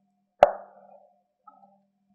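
A single sharp knock with a short ring about half a second in, as the ceramic soup bowl is set down on the wooden cutting board, followed by a faint tap.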